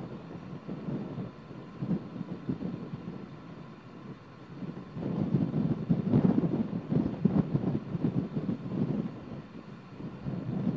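Wind buffeting the microphone: an uneven low rumble that comes in gusts, growing louder and rougher about halfway through.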